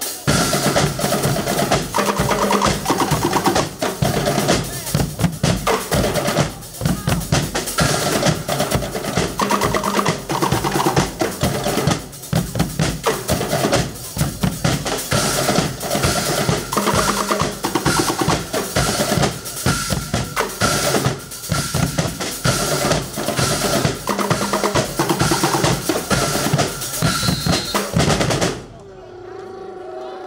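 Guggenmusik band playing: drum kit, snare and big bass drums beating out a dense rhythm under loud brass chords, cutting off together about a second and a half before the end.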